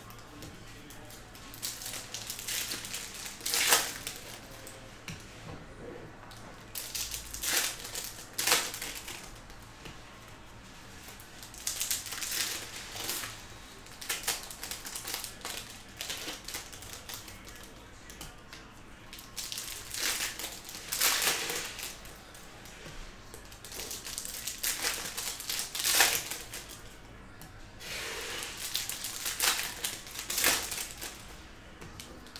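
Foil trading-card packs crinkling as they are handled and opened, with cards slid and flicked through a stack by hand, in irregular bursts every second or two.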